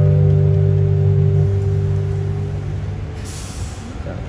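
Final chord of a song's guitar accompaniment, held and fading out over about two and a half seconds, leaving street traffic noise with a short hiss near the end.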